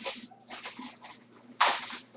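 Food packaging being handled: three short rustling bursts, the last and loudest a sudden sharp rip or swish near the end.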